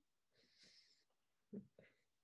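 Near silence, with a faint breathy hiss into the microphone about half a second in and a couple of faint, short low murmurs near the end.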